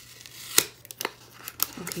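A white paper envelope being handled and its flap pulled open: several sharp, crisp paper crackles, the loudest about half a second in.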